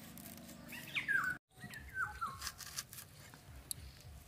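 A few short, falling bird chirps over light taps and clicks of shallots being sliced and handled. The sound drops out for an instant after about a second and a half.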